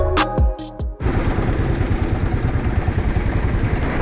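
Background music that cuts off about a second in, giving way to an engine running steadily at idle.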